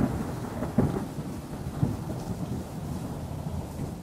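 A low rumbling noise that slowly fades, with two soft low thumps about one and two seconds in.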